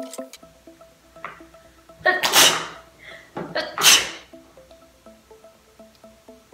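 A person sneezing twice, about a second and a half apart, over soft background music.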